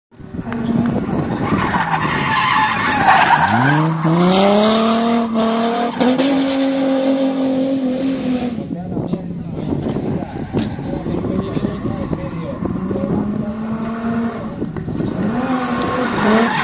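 BMW E30 drift car's engine revving hard: it climbs sharply about four seconds in, holds high, drops off past the middle, then rises again, over the hiss of tyres squealing as the car slides.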